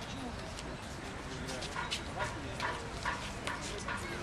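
A horse's hooves clip-clopping on stone paving: a steady run of sharp clops starts a little before halfway and carries on, over people's chatter.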